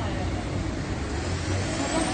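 A car driving past on a street, its engine note rising near the end, over steady traffic noise.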